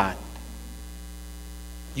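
Steady electrical mains hum in the church's microphone and sound system, a constant low hum with a row of higher overtones that holds at an even level.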